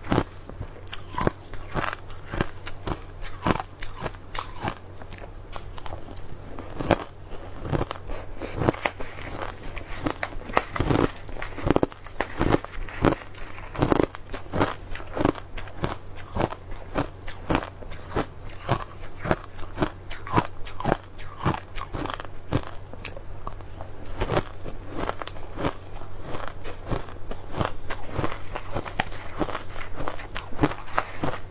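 Close-miked crunching of mouthfuls of purple crushed ice being bitten and chewed, a continuous run of crisp crunches several a second, with a steady low hum underneath.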